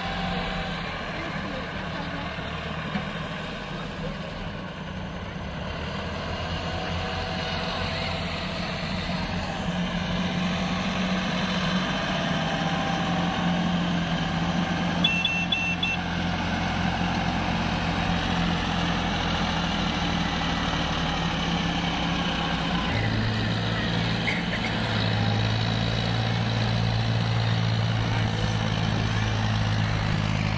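Diesel farm tractor engines running steadily. About three-quarters of the way in, a deeper, louder engine note comes in as a tractor hauling a loaded trolley works across the field.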